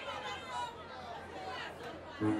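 Quiet, indistinct chatter: several people talking at once.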